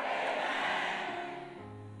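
Soft background music of steady held notes, with the large hall's echo of the last spoken line dying away over the first second. A new low note comes in near the end.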